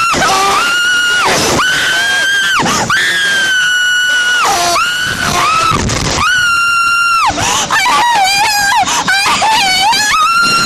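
A rider on a Slingshot reverse-bungee ride screaming in terror as the capsule is launched and swings: a string of long, high-pitched screams about a second each, one after another, turning into a lower, wavering wail over the last two seconds.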